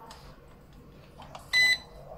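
A drone's remote controller gives one short, high-pitched electronic beep about one and a half seconds in, as a button is pressed.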